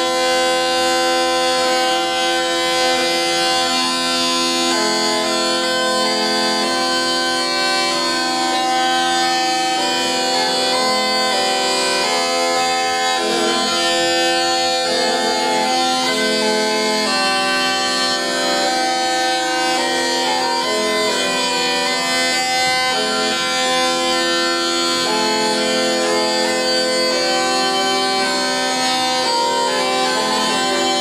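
A Calabrian zampogna (Italian bagpipe) playing a melody on its two chanters over steady, unbroken drones.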